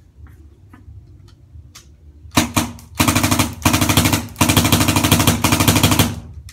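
Tippmann A5 electronic paintball marker firing on full-auto: a short burst of rapid pops about two seconds in, then three longer bursts running back to back near the end, after a few faint clicks. The marker is cycling cleanly on automatic after fresh maintenance.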